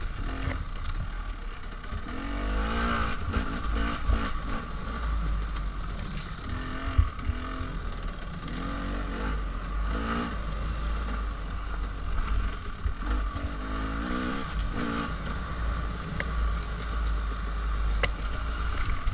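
Dirt bike engine rising and falling in pitch every second or two as the throttle is opened and closed, with a low wind rumble on the microphone.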